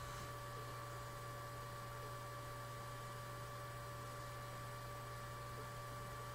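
Steady low electrical hum with faint hiss and a couple of thin steady whining tones, unchanging throughout.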